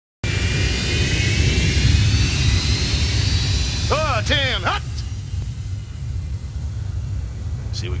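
Fighter jet engines running on a runway: a heavy rumble under several high whines that slowly rise in pitch, easing off after about five seconds. A short shouted voice cuts in about four seconds in.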